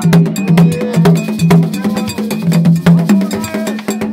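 Gagá percussion ensemble playing: barrel hand drums with skin heads, struck by hand and with a stick, in a fast steady rhythm of sharp strokes. Two low tones alternate underneath in a repeating pattern.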